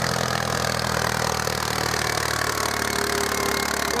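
Vintage farm tractor engine running steadily under load as it pulls a trailer up a hill.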